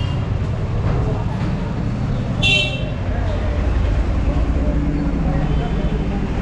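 Busy street traffic with a steady low rumble of vehicles and a single short, high vehicle horn toot about two and a half seconds in.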